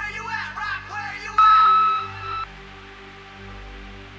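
A short burst of voice, then an answering-machine beep: one loud, steady electronic tone lasting about a second that cuts off abruptly. It sits over a low, sustained synth drone.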